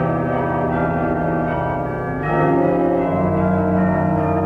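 Chamber orchestra playing sustained, bell-like chords, the harmony shifting twice in the second half.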